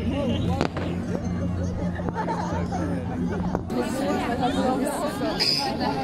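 Crowd of people chattering, many voices overlapping, over a low steady hum that stops about three and a half seconds in. Two short sharp cracks sound, one early and one just before the hum stops.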